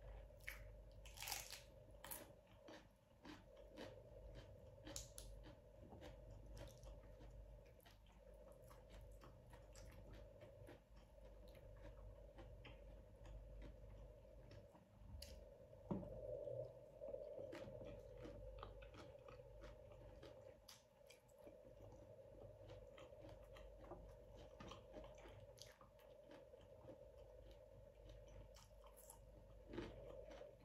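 Faint close-up chewing: quick wet mouth clicks and smacks with occasional crunches of food, and one louder bite about halfway through.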